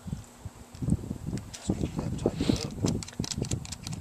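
Irregular small clicks and taps of wire connectors being handled and pushed into a solar charge controller's negative terminal, over low thumps and rumble.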